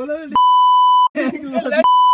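A steady, high-pitched censor beep sounds twice, each lasting under a second: once shortly after the start and again near the end, with talking in between. It is edited over the speech to bleep out words.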